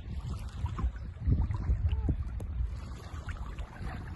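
Wind buffeting a moving phone microphone on a bicycle ride, heard as a low, uneven rumble, with a brief faint rising-and-falling tone about halfway.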